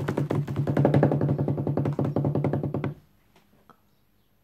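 A drum roll: rapid, even strokes on a low-pitched drum for about three seconds, then it stops suddenly.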